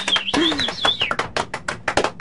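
A few people clapping by hand in applause at the end of a song, the claps separate and uneven. Someone lets out a short vocal cheer about half a second in.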